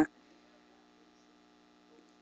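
Near silence with a faint, steady electrical hum, the tail of a man's word cutting off right at the start.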